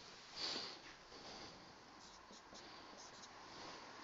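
Faint sounds of a marker on a whiteboard: a short rubbing swell about half a second in, then several quick short strokes between about two and three and a half seconds in.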